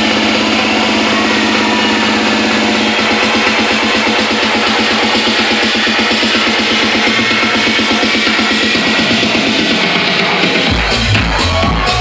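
Loud techno from a live DJ set in a build-up with the bass pulled out: a held synth tone turns into a rapid pulsing synth figure. The heavy bass line drops back in near the end.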